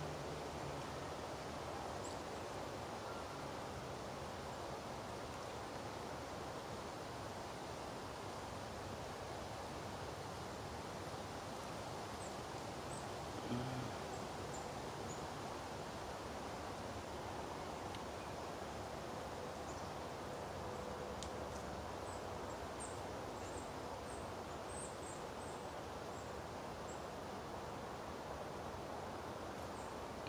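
Quiet woodland ambience: a steady background hiss with faint, short, high chirps now and then, mostly in the second half, and one brief soft low sound about 13 seconds in.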